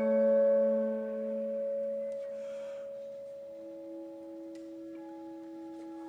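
Quiet contemporary chamber music for alto flute, clarinet and vibraphone: long, clear, held tones that fade away over the first couple of seconds. A brief breathy hiss follows, then a new soft held note enters about halfway through and a higher one joins near the end.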